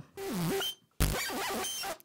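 Synthesized vinyl-record scratch from the ZynAddSubFX synthesizer, played live with a key and the MIDI pitch wheel: a short noisy scratch whose pitch swoops down and back up, then about a second in a sudden, steadier burst of scratch noise lasting about a second.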